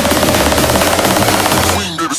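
Electronic dance music build-up: a very fast snare roll under a slowly rising synth tone, cutting off near the end.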